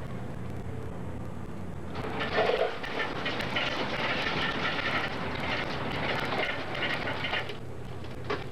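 Self-serve soda fountain dispensing into a paper cup: a loud rush starts about two seconds in and stops shortly before the end.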